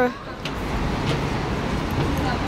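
Steady rumble of city road traffic, cars and buses passing, with a low engine hum coming in about halfway through.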